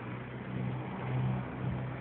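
A steady low mechanical hum, like a motor or engine running, that sets in at the start and holds evenly.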